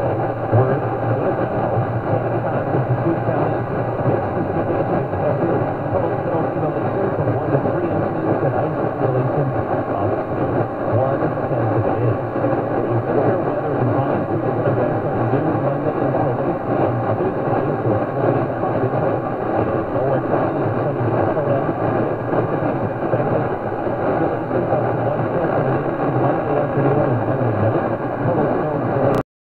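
Steady rushing static from a Philco 37-60 tube radio's speaker, tuned to a distant AM station on 1490 kHz. The noise fills the band up to a sharp treble cutoff, and no clear program audio stands out above it.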